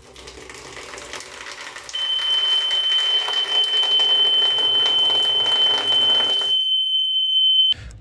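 An electric buzzer sounds one continuous high-pitched tone, starting about two seconds in and cutting off suddenly near the end. It is a coolant-level warning: it goes off when the float in the expansion-tank cap drops as the water level falls. A steady rushing noise runs underneath and stops shortly before the tone.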